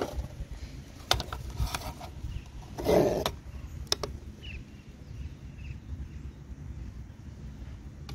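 Light knocks and clicks from a cast lead ingot and a small pocket digital scale being handled on a board tabletop. The loudest knock comes about three seconds in, with a sharper click about a second later.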